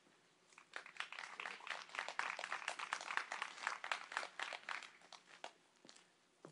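Faint applause from a small audience: scattered clapping that starts about half a second in, swells, and dies away near the end.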